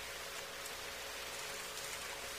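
Steady hiss from the noise floor of an old late-1950s recording, with a faint steady hum underneath.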